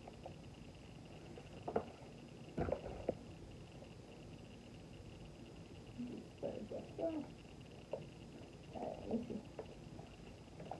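Plastic knocks and clicks from a Bright Starts baby swing's seat being handled and fitted onto its frame: a few sharp knocks a couple of seconds in, then softer handling creaks and rustles later on.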